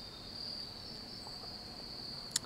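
Insects trilling in one steady, unbroken high-pitched tone.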